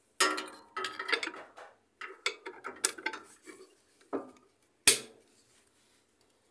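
Metal motor clamps clanking and scraping against the motor and gearcase of a Whirlpool/Kenmore direct-drive washer as they are worked into place: a string of sharp metallic clicks and clanks, the loudest single clank about five seconds in.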